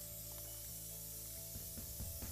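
Aerosol spray-paint can spraying in one steady, continuous hiss as a light coat of paint goes onto a metal table.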